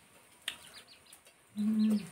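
A few faint, short bird chirps, then near the end a brief hummed 'mm' from a woman, held on one low note.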